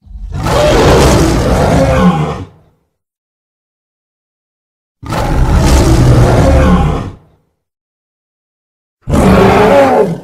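Roars of a fictional giant ape, a sound effect mixed from film monster sounds: three loud roars, the first two about two seconds each, the third shorter, with silence between them.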